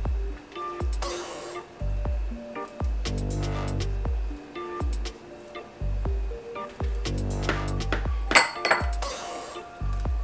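Electronic background music with a steady bass beat. A brief bright clink rings out near the end.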